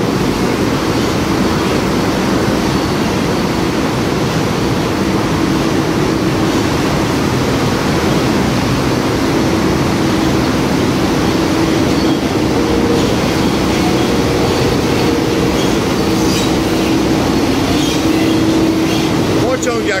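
Eurotunnel shuttle train running through the Channel Tunnel, heard from inside a wagon: a loud, steady rumble and rush with a low hum.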